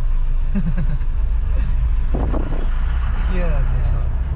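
A motor vehicle running in road traffic: a steady low engine and road rumble, with a brief louder noisy surge about two seconds in.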